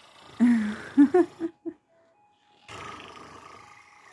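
A person's playful, roar-like vocal sound about half a second in, followed by a few short voiced grunts. Near the end there is a faint steady hiss with a thin tone.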